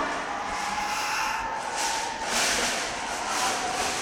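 Shredded plastic snack-wrapper pieces crinkling and rustling as they are handled, louder in the second half.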